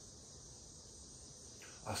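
Faint room tone with a steady high-pitched hiss, and a man's voice starting again just at the end.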